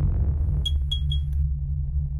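Electronic intro sting: a deep, steady bass drone with a quick run of four high electronic pings about half a second in.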